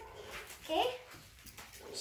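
A brief, high-pitched vocal whine that rises in pitch, about a second in, against otherwise quiet room sound.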